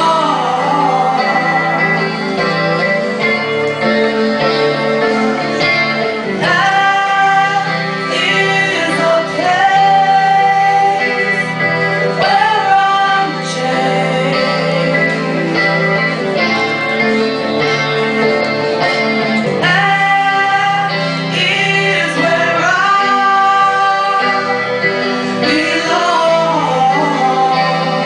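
Two women singing a worship song live into microphones, holding long notes with gliding pitch, over electric guitar accompaniment.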